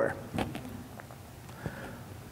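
The end of a man's word, then a pause with low room noise, a faint hum and a few faint soft clicks.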